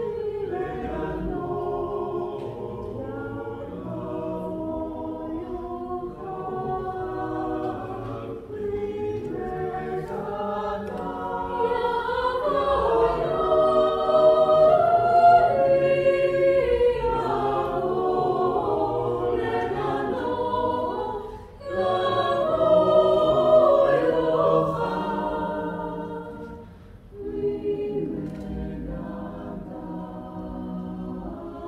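Mixed chamber choir singing a cappella, several voice parts in close harmony. It swells louder twice, in the middle and a few seconds before the end, with two brief breath breaks between phrases.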